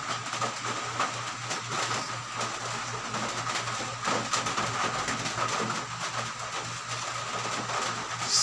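Hands swishing and splashing in a plastic basin of water while being rinsed, in irregular small splashes, over a steady low hum.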